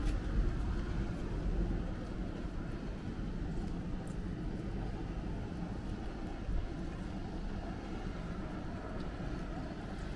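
City street ambience: a steady low rumble of distant traffic and city hum, with no single sound standing out.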